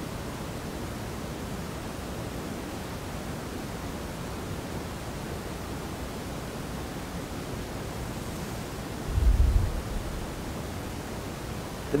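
Steady hiss of background noise, with one dull, low thump about nine seconds in.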